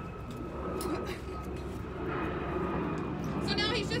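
A steady low rumble of outdoor background noise, like a distant engine. A voice starts near the end.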